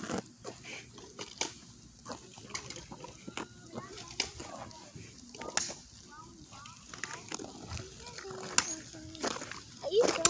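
Faint, distant children's voices outdoors, with scattered knocks and rustles from a handheld phone being moved around.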